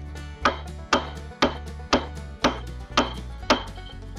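A hammer driving a steel fence staple into a wooden fence post: seven sharp, even strikes at about two a second.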